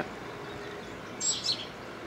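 A small bird chirping twice in quick succession, short high calls a little over a second in, over a steady faint outdoor background hiss.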